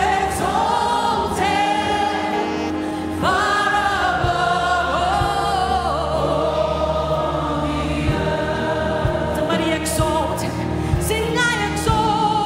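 Gospel worship song: voices and a choir sing long held notes over instrumental backing.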